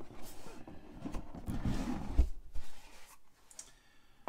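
Cardboard board-game box lid being slid off its base, a rustling scrape of card on card, with a low thump just after two seconds in.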